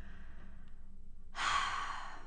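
A woman sighing: a faint breath out, then a long, louder breathy exhale starting a little past halfway.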